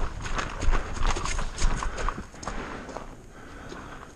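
Running footsteps on grass, heavy and regular, slowing and quieting about two and a half seconds in as the runner reaches cover.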